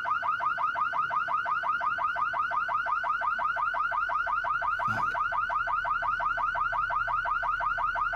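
Car alarm sounding continuously: a rapid, evenly repeating upward-sweeping electronic tone, about eight sweeps a second.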